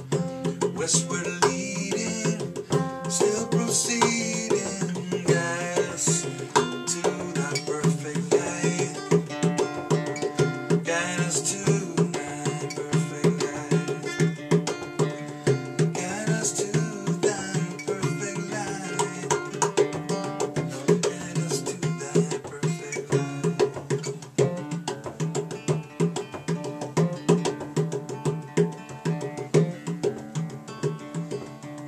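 Acoustic instrumental music: hand percussion playing a busy, driving rhythm over acoustic guitar, with no singing.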